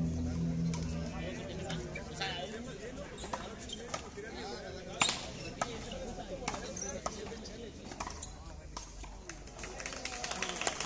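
A frontón ball smacking off the wall and the concrete court in a series of sharp, irregular cracks, the loudest about five seconds in, with voices talking in the background.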